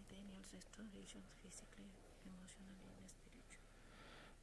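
Near silence with faint, hushed speech: a low murmured exchange with some whispering.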